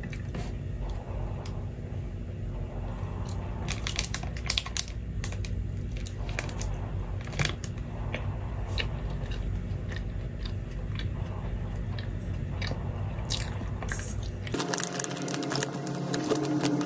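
Close-up eating sounds: crunchy bites and chewing, with scattered sharp crackles, over a steady low hum. Near the end the hum drops away.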